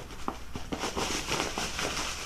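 Fabric and bag rustling as a hand rummages in a bag of clothes and draws out a shirt, with a few small scattered clicks of handling.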